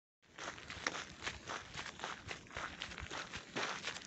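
Footsteps crunching on a loose gravel and stone road, a steady walking rhythm that cuts in just after the start.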